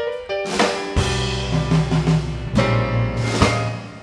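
Live jazz trio playing an instrumental passage: piano chords and runs over an electric bass line, with a few sharp drum-kit hits. The music dies away over the last second.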